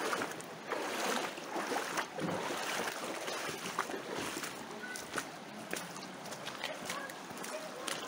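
Shoes splashing and crunching through a shallow, pebbly stream, irregular steps over the steady sound of running water.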